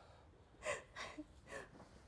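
Quiet, short gasping breaths from a person, three in quick succession, the first the loudest.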